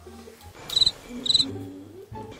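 Cricket chirping sound effect: two short trilled chirps a little over half a second apart, the stock 'awkward silence' gag.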